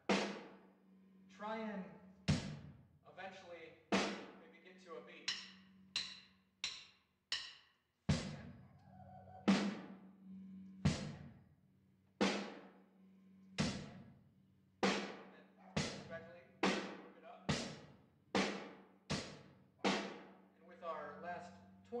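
Acoustic drum kit played in slow single strokes, bass drum, snare and hi-hat, each hit ringing out and dying away. The strokes come about one every second and a bit at first and gradually speed up in the second half.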